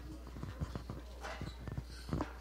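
Faint, irregular clicks and knocks over a steady low hum.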